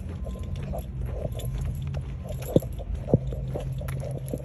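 Handling noise from a phone carried while walking: a steady low rumble with irregular rubbing and small taps, and two sharp knocks about two and a half and three seconds in.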